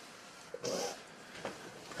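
A quiet, short breathy vocal sound from a person, likely the distressed woman in bed, about half a second in, followed by a fainter brief sound about a second later.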